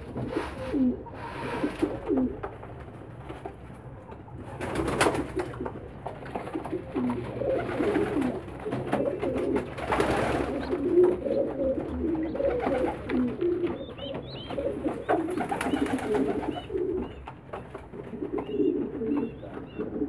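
Domestic pigeons cooing over and over, with a few short noisy bursts and some faint high peeps a little after the middle.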